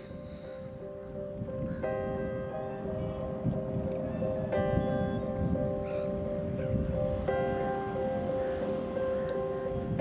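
Background music of sustained, held notes that shift to new pitches every couple of seconds, fading in at the start over a low, rumbling ambience.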